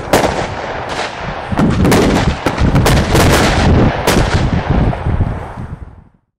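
Fireworks exploding in rapid succession: many sharp bangs and cracks over a continuous rumble, dying away near the end.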